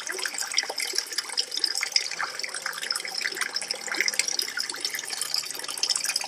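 Water splashing and trickling steadily into a garden pond, a continuous crackling patter of falling water.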